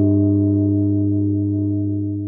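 A low, struck metal gong tone ringing on steadily and slowly fading out.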